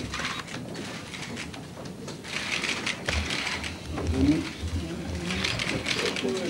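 Many press photographers' camera shutters clicking rapidly together in several bursts of rattling clicks.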